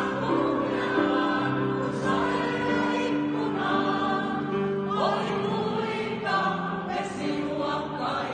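A small mixed choir of about a dozen men and women singing together in a church, holding long notes that change every second or so.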